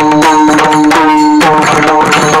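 Pakhawaj barrel drum played in a fast solo passage: rapid strokes on the drum heads, the tuned head ringing with a short, clear pitch between strokes.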